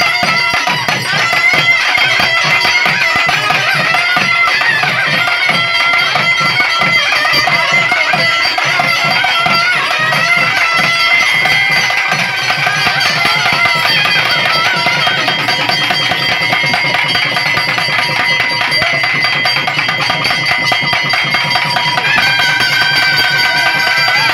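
Naiyandi melam, a Tamil temple folk band, playing loud ritual music to call the deity into possession. A nadaswaram plays a wavering, reedy melody over a steady drone, driven by fast thavil drum beats, and holds a long note near the end.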